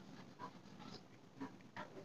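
Near silence with a few faint, short strokes of chalk on a blackboard.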